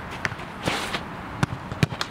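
A goalkeeper's quick footsteps and sharp thuds on artificial turf as he runs and dives for a save, with a short scuffing rush about a third of the way in.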